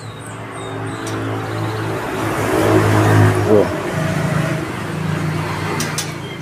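A motor vehicle engine running nearby, growing louder toward the middle and then easing off, with a shift in pitch about three and a half seconds in.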